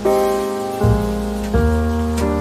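Slow, gentle piano music: sustained chords with a new note or chord struck about every three-quarters of a second, over a soft, even hiss like light rain.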